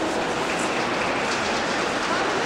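Deutsche Bahn Intercity passenger coaches rolling past along a platform track: a steady noise of steel wheels running on rail, echoing in the station's train shed.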